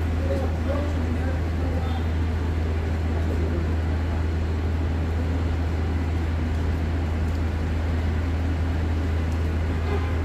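A steady, unbroken low drone of construction-site machinery running, over the even noise of a city street.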